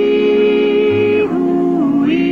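Music: voices holding long sustained chords, moving to a new chord a little past the middle, with a low bass note underneath.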